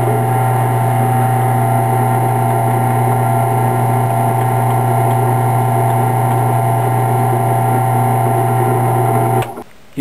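Drill press motor running with a steady hum while an eighth-inch flat-bottom bit bores a shallow countersink into a thin plywood fingerboard deck. The motor shuts off near the end.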